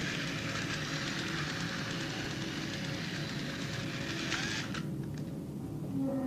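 Toy electric train running around its tabletop track with a steady running noise, cutting off abruptly about four and a half seconds in.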